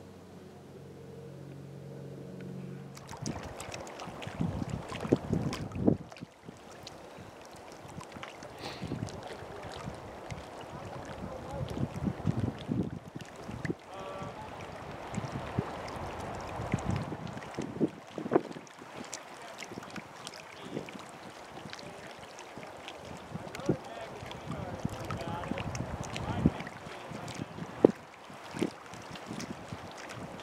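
Wind gusting across the microphone in irregular buffets, with a rushing noise, starting abruptly about three seconds in after a faint steady hum.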